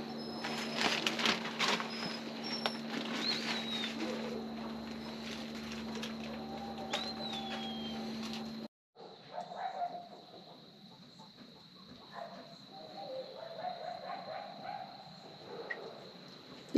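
Birds calling: a few short chirps and two whistled calls that rise and then fall, over a steady faint hum and a few light clicks. The sound cuts out abruptly just past halfway and comes back quieter.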